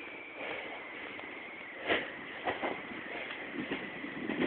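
Snowboard sliding through deep powder snow: a steady hiss of the board on the snow, with a couple of short louder rushes about two seconds in.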